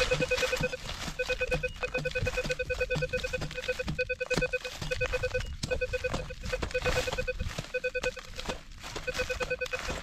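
A metal detector's target signal, a rapid pulsing electronic beep repeating with a few short breaks, which marks buried metal under the hole being dug. A long-handled digging tool chops into soft soil with repeated dull strikes.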